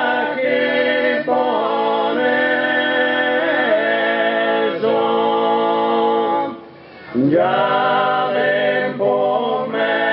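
Four male voices of a Sardinian cuncordu singing a cappella in close harmony, holding long sustained chords. About two-thirds of the way through, the singing breaks off briefly and a new phrase starts with the voices sliding up into the chord.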